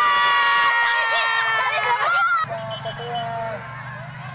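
Crowd of spectators, children among them, shouting and calling out, with one long held cry lasting about two seconds. The sound cuts off abruptly about two and a half seconds in, to quieter crowd voices.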